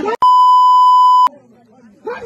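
A steady, loud electronic bleep tone at one pitch, starting and stopping abruptly and lasting about a second, dubbed over the shouted speech: a censor bleep masking a word.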